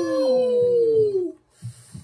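A long, high vocal "ooooh" cry from more than one voice, sliding slowly down in pitch and stopping about a second and a half in: a pained reaction to a hit.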